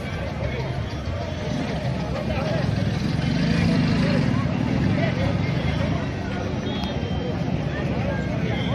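Outdoor crowd background of players and spectators talking and calling out at a distance, with a steady low rumble that swells around the middle.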